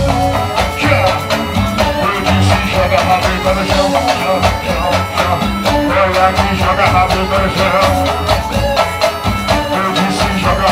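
Live band music with drums, electric guitar and keyboard playing loudly to a steady beat.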